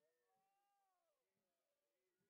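Near silence, with only very faint traces of sound.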